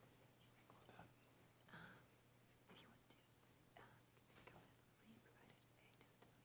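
Near silence: quiet room tone with a few faint, brief rustling sounds.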